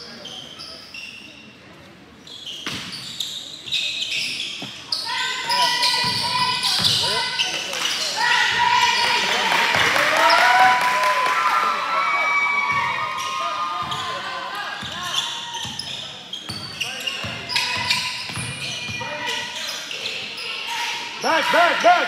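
A basketball being dribbled on a hardwood-style gym floor, repeated bounces, under a din of overlapping shouting voices from players and spectators that swells in the middle.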